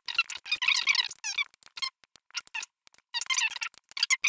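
A quick, irregular run of short, high squeaks and clicks with wavering pitch, separated by brief gaps.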